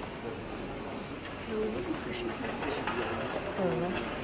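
Faint, indistinct speech in short snatches over the steady background noise of a large warehouse store.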